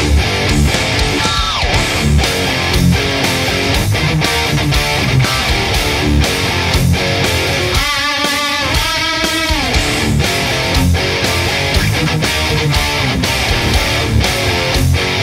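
Jackson Kelly KEXQ electric guitar played through a high-gain VHT Pittbull Ultra Lead amp, heavy-metal riffing with fast chugging low notes. About a second and a half in a note glides down in pitch, and around the middle a held note wavers with fast vibrato before sliding down.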